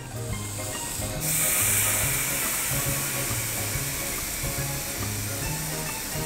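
Sauce poured onto a hot iron steak plate: a sudden loud sizzle starts about a second in and carries on, easing off slightly. Background music with a repeating bass line plays underneath.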